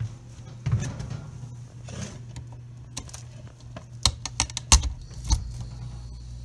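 A few sharp clicks and knocks about four to five seconds in, one of them the mini fridge compressor's new PTC start relay clicking on. After it the compressor starts and runs with a low steady hum, a sign the replacement relay has fixed the no-start.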